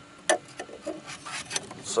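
A long screwdriver scraping and knocking against the plastic around a headlight aim adjuster's access hole: a handful of short scrapes and clicks, the strongest about a third of a second in.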